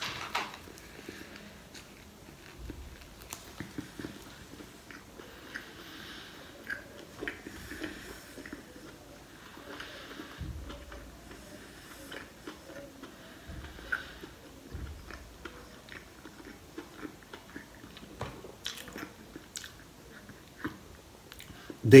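A person biting into a soft bread-roll sandwich and chewing it, heard as quiet, irregular mouth clicks and smacks.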